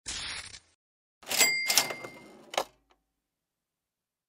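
Cash register sound effect: a brief swish, then about a second in a clattering ka-ching with a bell ringing, and a final click.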